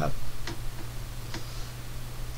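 A few soft clicks about a second apart over a steady low hum, after a brief spoken "uh".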